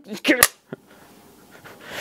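A young man's voice finishing a spoken word, then about a second and a half of quiet room tone with one faint click.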